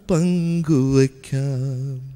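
A man singing unaccompanied into a handheld microphone: three slow, held notes with a slight waver, the last one the longest, each separated by a brief breath.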